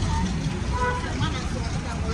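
Busy roadside street ambience: a steady low rumble of motor traffic with faint background voices.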